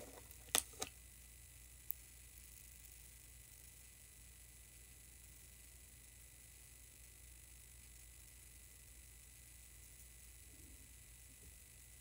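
Near silence: faint steady room hiss and hum, with two sharp clicks about half a second in and a faint tick near two seconds.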